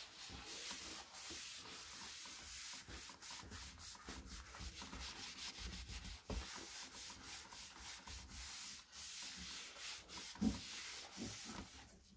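Paper towel wiped briskly back and forth over a laptop's plastic lid, a rubbing hiss in many quick strokes, with one louder knock near the end.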